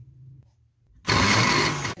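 Electric mini food chopper running in one loud burst of about a second, starting about a second in and cutting off abruptly. Its blades are chopping onion, ginger, garlic, green chillies and fresh coriander into a paste.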